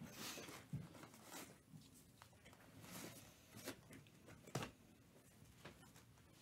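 Near silence: quiet room tone with a few faint, short clicks and rustles, the one near the end of the second half the clearest.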